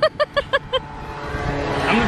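A person laughing in a quick run of ha-ha pulses that trails off under a second in, then a passing car on the road, growing louder.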